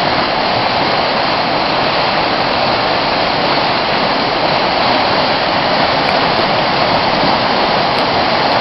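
Fast, churning river running high over rapids: a steady, loud rush of water.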